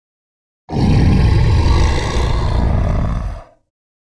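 A loud bear roar sound effect with a rough, rumbling low end. It starts suddenly just under a second in and dies away about three and a half seconds in.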